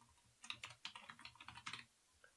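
Computer keyboard being typed on: a quick run of faint key clicks starting about half a second in and lasting about a second and a half.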